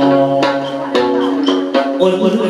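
Chầu văn ritual music: a đàn nguyệt (moon lute) plucked over sustained pitched tones, with three sharp percussive strikes marking the beat.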